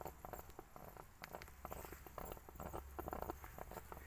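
Steam pulsing out of a homemade steam pipe under the cloth rag wrapped over its end, the rag drumming in quick, irregular taps while the steam gurgles inside.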